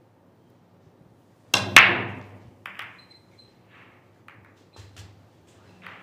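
A Chinese eight-ball break shot. About a second and a half in, the cue tip strikes the cue ball with a sharp crack, and a quarter second later the cue ball smashes loudly into the racked balls. The balls then clatter apart, with scattered, fading clicks as they hit each other and the cushions.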